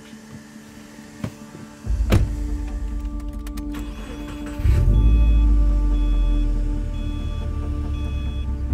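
A car door shuts with a thud about two seconds in, then a Subaru WRX's turbocharged flat-four is cranked and starts about 4.6 seconds in, settling into a steady idle. Background music plays throughout.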